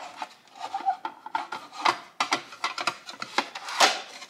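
Clicks and knocks of a fold-out margarita glass rimmer's swivelling trays being fumbled shut, with rubbing between the knocks. The loudest knocks come about two seconds in and near the end.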